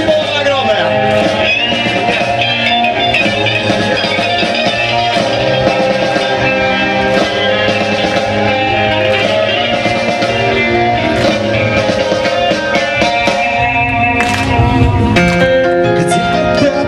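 Heavy metal band playing live through a festival PA, an instrumental passage with a lead guitar melody over electric guitars, bass and drums.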